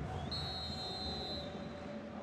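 Referee's whistle blowing once for kick-off, a single steady high note lasting about a second, over the low, even noise of a stadium crowd.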